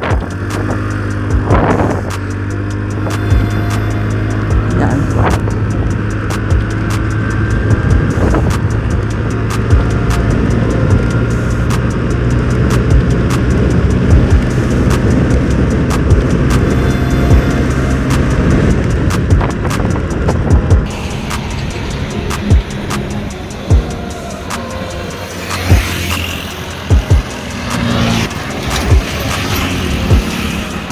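TVS Ntorq 125's single-cylinder 124.8 cc engine at full throttle, holding a steady drone as the scooter accelerates hard, with wind noise on the handlebar microphone; background music plays over it. The drone gives way about two-thirds of the way through.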